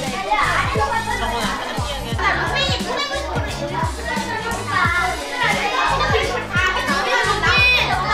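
Upbeat background music with a steady kick-drum beat and bass, with children's voices chattering over it.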